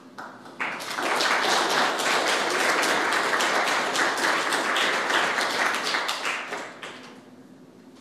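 Audience applauding, many hands clapping at once; it starts about half a second in and dies away about a second before the end.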